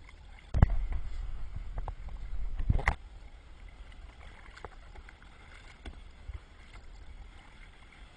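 Kayak paddling: a sharp knock of the paddle a little over half a second in and another just before three seconds, with a low rumble on the microphone between them, then quieter water sounds against the hull.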